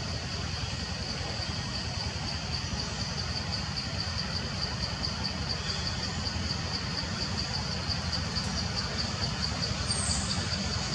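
Forest insects buzzing in a steady high-pitched chorus that pulses several times a second, over a constant low rumble.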